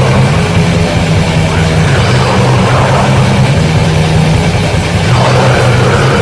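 Loud heavy metal: distorted guitars and bass play a low riff that steps from note to note, under a dense wash of distorted sound.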